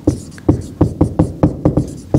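Dry-erase marker writing on a whiteboard: a quick, slightly irregular run of sharp taps and scratches as the letters are formed, about four or five a second.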